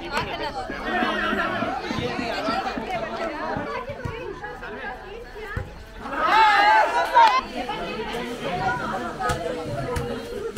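Many voices of players and onlookers talking and calling out at once, with one louder shout about six seconds in.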